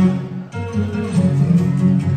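Background music with a short dip in loudness about half a second in.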